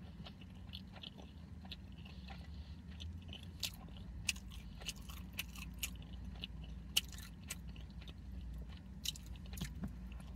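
Close-miked chewing of a hot dog in a soft bun with mayonnaise: a scattered run of small wet mouth clicks and smacks.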